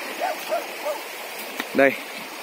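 Shallow rocky stream running steadily, with three faint short barks of a distant dog in the first second.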